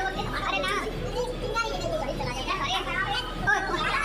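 Overlapping chatter of children's and adults' voices at a party, with no one voice clear.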